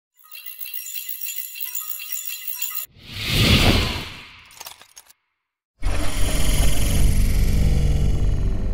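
Intro sound effects: high tinkling chimes for a little under three seconds, then a crashing, shattering effect that swells and fades away. After a short silence, loud music with a heavy low end starts about six seconds in.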